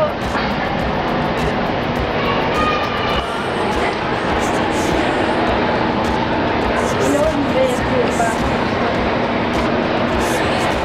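Steady, loud background noise of a working restaurant: a dense machine-like rush with faint voices and music underneath.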